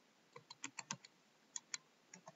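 Faint computer keyboard keystrokes: a quick run of about six keys, then two more a moment later.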